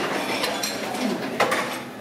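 Bar room ambience, with tableware clinking a few times over a steady background noise.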